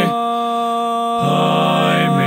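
Four-part a cappella barbershop harmony, one male voice overdubbed into tenor, lead, baritone and bass, holding sustained chords. The lower parts drop away near the start and re-enter with a new, fuller chord a little over a second in.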